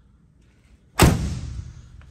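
A car door slammed shut once, about a second in: a single heavy slam that dies away over most of a second. It is the door of a 1963 Chevrolet Impala.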